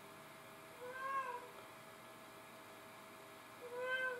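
Domestic cat meowing twice, faintly, each call about half a second long and rising then falling in pitch, one about a second in and one near the end. The cat is calling, which the owner takes as calling about another cat.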